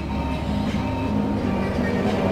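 Steady low rumble and hum of machinery, with a few held low tones that change pitch.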